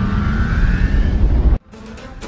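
Editing transition sound effect: a loud rumbling whoosh with a faint rising whine on top. It cuts off abruptly about one and a half seconds in, and quieter music follows.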